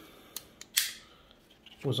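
Handling of metal multitools: a light click, then a sharp clack about three quarters of a second in, and faint clicks just before the voice returns.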